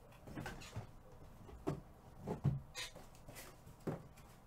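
A string of light knocks and short rustles, about eight at uneven intervals, as things are handled and set down on a desk.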